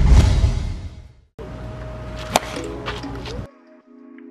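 A whoosh transition effect swells and fades over the first second, followed by background music with a sharp hit a little past the two-second mark; the music drops much quieter near the end.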